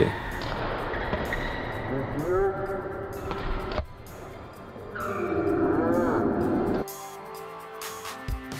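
Live sound of a badminton drill: court shoes squealing on the floor in short rising-and-falling squeaks over a noisy hall background, with one sharp crack just before halfway. Background music with steady held notes comes in near the end.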